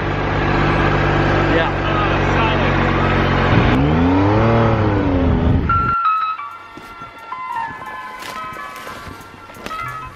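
Triumph motorcycle engine running steadily at road speed, its pitch swelling up and then easing back near the middle. It cuts off abruptly about six seconds in, and quiet music follows.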